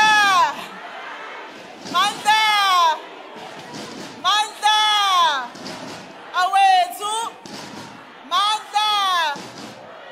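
A single loud, high-pitched voice shouting a short two-part chant call, five times about every two seconds, each call rising and falling in pitch. A lower rumble of hall noise sits between the calls.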